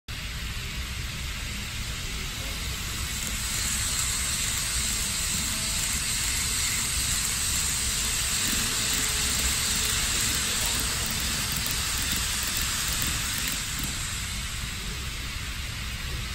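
TOMIX N gauge model shinkansen trains, an N700A and an E7, running past each other on the track: a steady hiss of wheels and motors that swells about three seconds in, holds, and fades near the end.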